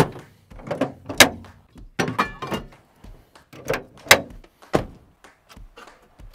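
Doors and hatches on a 4WD ute's canopy and cab being swung shut, a run of sharp thunks and latch clicks, several close together.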